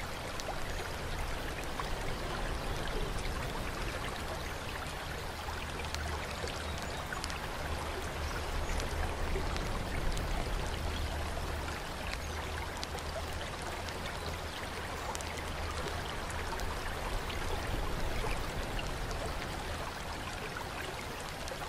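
Bath water flowing and trickling steadily, with scattered small drips, over a low steady rumble.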